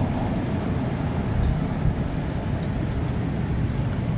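Steady outdoor background rumble and hiss with no distinct events.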